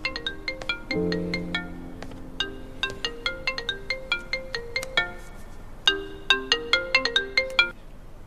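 iPhone ringtone: a repeating melody of short, bright plinking notes, pausing briefly about five seconds in and starting again, then cutting off just before the end as the incoming call is answered.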